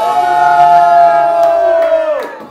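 A person's long, high-pitched whoop of triumph, held on one note for about two seconds and falling away at the end, as the center mold comes cleanly out of the giant sushi roll.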